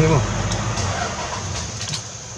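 Safari jeep engine idling with a steady low rumble that dies away near the end. A voice trails off at the very start, and a few light clicks sound just before the end.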